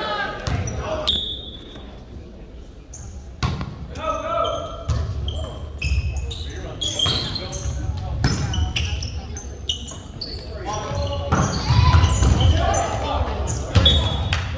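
Volleyball rally in a large gym: several sharp hits on the ball that echo through the hall, short high squeaks like sneakers on the hardwood, and the voices of players and spectators throughout. The voices grow louder near the end.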